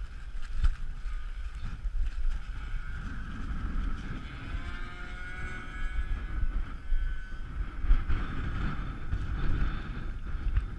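Strong wind gusting on the microphone, with a small motor's whine in the background. Around the middle the whine's pitch wavers up and down.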